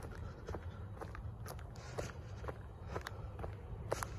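Footsteps in Nike Air Monarch sneakers on a concrete sidewalk, about two steps a second, over a steady low rumble.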